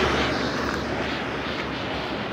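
A steady engine roar going by, slowly fading.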